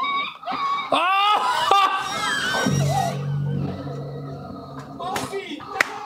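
Low-budget film sound track: a few high cries that fall in pitch, then a low droning note of music.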